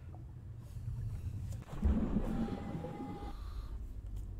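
Muffled underwater sound design from a music video's opening: a steady low rumble that swells louder and fuller a little under two seconds in, with a faint steady high tone for about a second.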